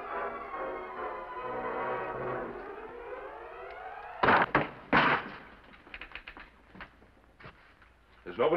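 Orchestral score music rising to the end of a phrase. Then a wooden door is kicked open: two heavy thuds less than a second apart, followed by a few lighter knocks on boards.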